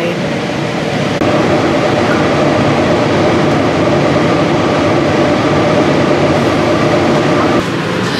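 Light-rail train running, heard from inside the car: a steady rumble with a held multi-tone whine that gets louder about a second in and cuts off shortly before the end.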